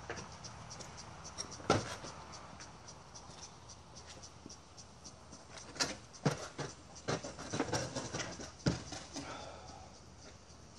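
Pine lumber knocking on a concrete driveway as a wooden axe-throwing target and its stands are moved and set in place: one sharp knock about two seconds in, then a run of several knocks between about six and nine seconds.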